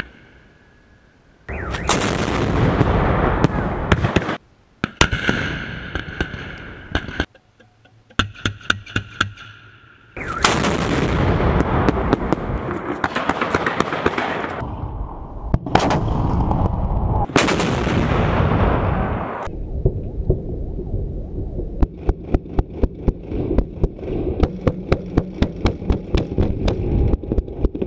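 Salute shots from 122-mm D-30 howitzers: about five heavy blasts, each with a long rolling echo. From about 20 seconds in, a fast run of sharp pops and crackles as fireworks are launched from the 2A85 salute launcher.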